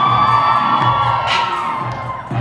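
Dance-mix music with a steady low beat, under an audience cheering with high, long-held screams.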